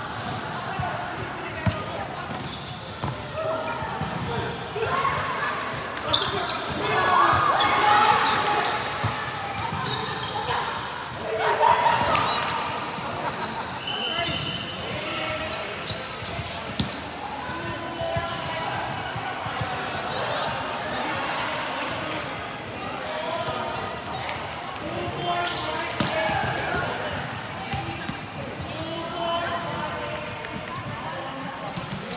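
Several people talking and calling out in an echoing sports hall, with a few sharp volleyball impacts now and then.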